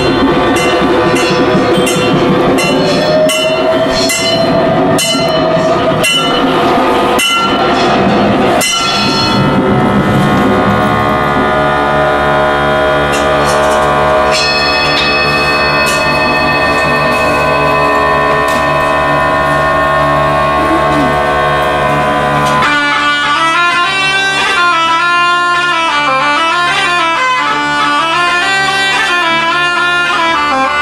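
Live early-music ensemble. Regular strikes of hand percussion over a held tone give way to a sustained drone with struck singing bowls ringing over it. About 23 s in, bagpipes come in abruptly, playing a winding melody over the drone.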